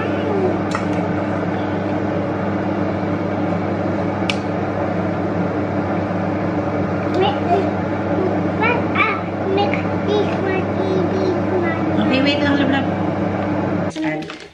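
A steady electrical hum, like that of a running appliance or motor, with a few soft spoken words over it.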